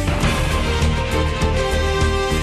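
News programme's closing theme music with a steady beat.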